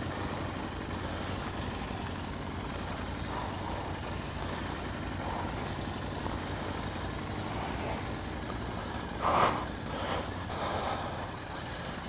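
Motorcycle engines idling and running at low speed, a steady low engine sound, with a short louder sound about nine seconds in.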